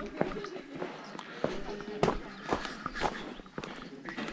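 Footsteps walking down a paved garden path, about two steps a second.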